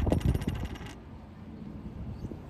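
Light clinking and clattering of small hard objects that stops suddenly about a second in, leaving a low rumble of wind on the microphone.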